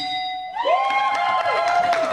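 A short, steady electronic ding from the Family Feud game board as the top answer is revealed. About half a second in, the team breaks into loud cheering and shouting with clapping.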